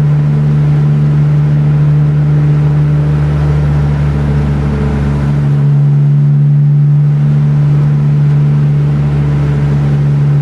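BMW E46 M3's straight-six with a BimmerWorld race exhaust and resonator droning steadily at highway cruise, heard from inside the stripped-out cabin: one constant low note with road noise over it.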